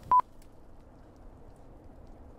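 One short, high electronic beep, a single steady tone lasting about a tenth of a second, right at the start, followed by faint hiss.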